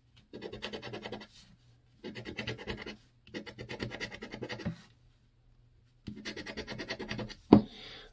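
A coin scratching the latex coating off a paper scratch-off lottery ticket: four spells of quick rasping strokes, each about a second long with short pauses between. A single sharp knock near the end, louder than the scratching.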